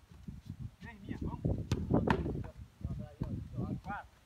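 Indistinct voices talking, with a couple of sharp knocks about one and a half to two seconds in.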